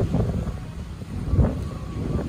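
Wind buffeting the microphone on an open boat deck: a steady low rumble, with a dull knock about one and a half seconds in.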